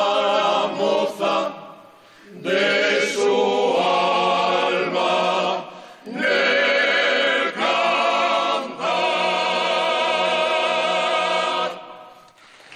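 Asturian ochote, a male a cappella vocal group, singing in close harmony: sung phrases with two short breaks, then a long held chord that stops near the end.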